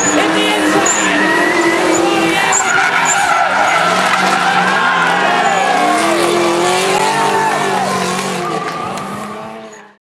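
Two drift cars sliding in tandem, their engines revving up and down over squealing tyres. The sound fades out near the end.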